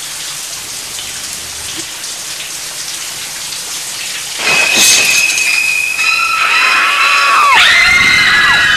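Shower water spraying, an even hiss like rain. Just past halfway a loud, piercing high shriek cuts in, with a short burst near 5 s. Several more high shrieking tones join and some bend down in pitch near the end.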